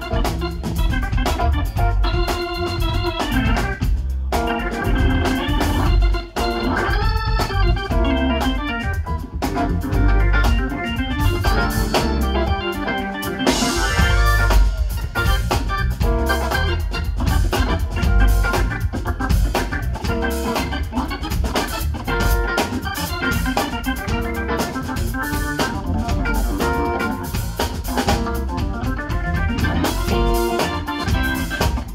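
Organ solo played live over bass and drums, with fast runs of notes.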